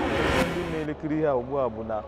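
A short rush of noise that cuts off sharply just under a second in, heard over a man's voice, followed by more speech.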